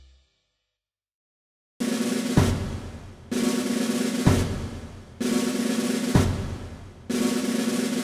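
After about a second and a half of silence, a children's song's instrumental intro starts: a snare-drum roll with sharp accented hits in a steady pattern repeating about once a second, over a low held note.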